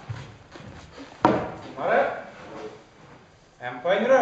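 A single sharp clack from a practice longsword strike about a second in, followed by shouted voices.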